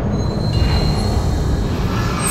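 Horror-trailer sound design: a loud, steady low rumble with thin, high whining tones held over it.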